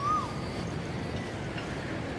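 Steady outdoor park ambience with a low background hum, broken right at the start by one short whistled note that rises and then falls.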